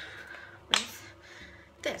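A single sharp click about three quarters of a second in, from handling a small makeup pot.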